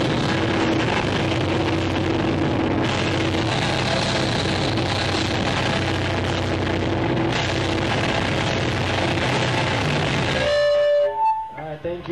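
Live rock band with distorted electric guitars, bass and drums playing loudly through the end of a song, over a held low note. The music stops abruptly about ten and a half seconds in, and a voice calls out briefly.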